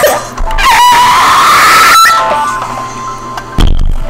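A man's voice belting a long, distorted high note over a song's backing music, the note rising slightly before it breaks off about two seconds in; the music carries on more quietly, and a short thump comes near the end.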